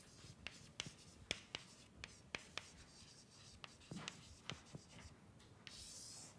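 Chalk on a blackboard while words are written: faint, irregular taps and short scratches. A longer scrape comes near the end as the heading is underlined.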